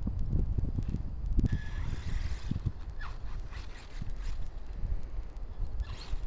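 Wind rumbling on the microphone, with faint short bursts of electric motor whine and tyre hiss from an HPI Savage XS Flux brushless RC mini monster truck as it is set back on its wheels and driven off across grass.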